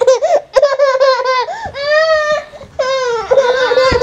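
Toddler laughing while being tickled: a run of high-pitched laughs, several of them long and drawn out.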